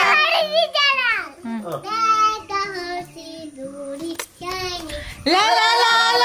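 A child singing in a playful, broken way, the pitch sliding up and down between short gaps, then louder sustained 'la la' singing picks up about five seconds in.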